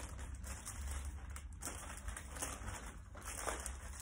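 Crisp packet plastic crinkling and rustling in irregular small bursts as the packets are handled and laid down.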